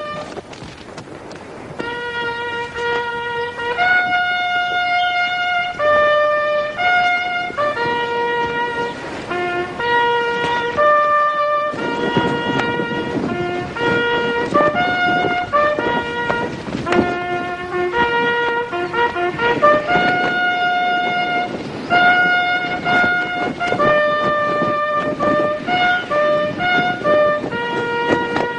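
A military bugle call played on a single brass horn: a melody of held notes that leaps between the horn's few natural notes, beginning about two seconds in.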